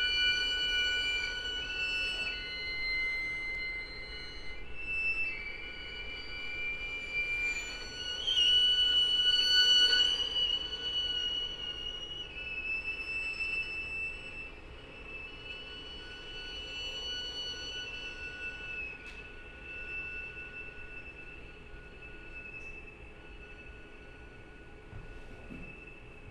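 String quartet of two violins, viola and cello holding quiet, high sustained bowed notes, several at once, overlapping and shifting pitch in steps. It swells briefly near the middle, then thins out and fades.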